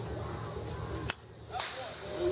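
A single sharp pop about a second in: a pitched baseball smacking into the catcher's leather mitt.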